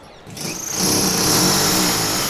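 Handheld electric drill starting about a third of a second in, its whine rising quickly and then running steadily as it drills into a wall.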